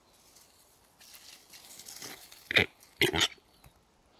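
Displaying male western capercaillie calling at close range: a raspy, hissing run of sound, then two loud short calls about half a second apart, the second longer.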